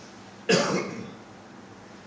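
A single short cough about half a second in, loud and close to the microphone, dying away within about half a second.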